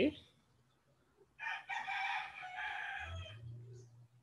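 A fowl's long call of about two seconds, starting about a second and a half in, after a near-silent pause. A low hum comes in near the end.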